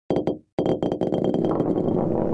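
Sound effect for an animated logo ident: two or three sharp clicks, a brief gap, then a rapid rattle of clicks and knocks.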